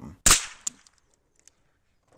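A single sharp shot from a Chiappa Little Badger .22 rimfire rifle, fading quickly, with a fainter click about half a second later.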